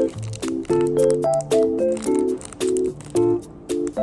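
Background music: a light instrumental of short repeated chords over low bass notes, about two chords a second.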